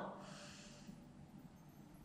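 A woman breathing in softly, an airy breath that fades out after about a second, followed by near silence.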